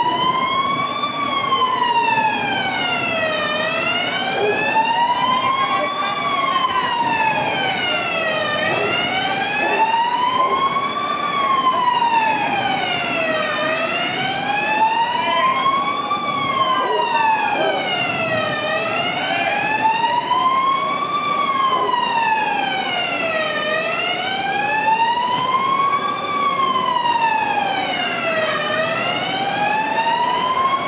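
Emergency vehicle siren sounding a slow wail, its pitch rising and falling steadily about every five seconds.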